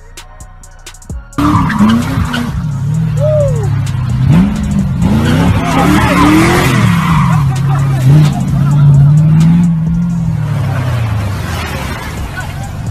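Car engine revving up and down hard with tyre squeal as the car drifts in circles; it starts suddenly about a second and a half in, after a short stretch of music with a drum beat.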